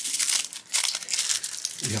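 Crinkly wrapper of a small blind-bag toy accessory crackling and tearing as fingers peel it open, in quick irregular crackles.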